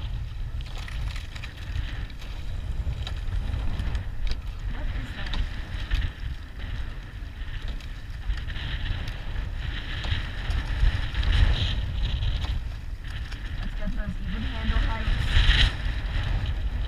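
Wind buffeting the microphone of a camera mounted on a rowing shell, a constant low rumble, with the hiss of water rushing along the hull that swells a few times.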